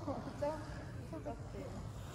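Faint voices with a few short, wavering sounds in the first second and a half, over a steady low hum.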